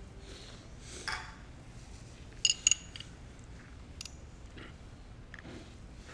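Two quick, bright clinks of glass about two and a half seconds in, against quiet room tone with a few faint knocks and rustles.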